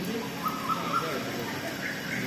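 Birds calling: a few short clear notes, then higher rising notes near the end, over steady outdoor background noise.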